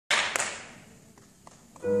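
A short, sharp noise at the very start, two quick hits fading away, then a quiet moment before a grand piano begins playing near the end: the first notes of a slow classical piano piece.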